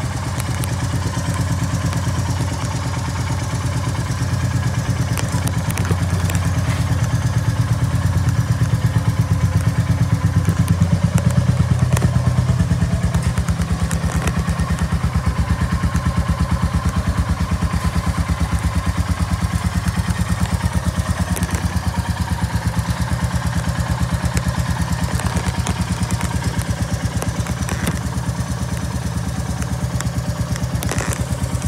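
Royal Enfield Classic 350 single-cylinder engine idling steadily with an even beat. It runs a little louder for a few seconds mid-way, with a few light clicks over it.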